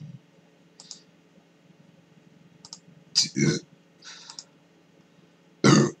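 Scattered short mouth clicks and lip smacks from someone tasting a drink, with a louder smack about three seconds in.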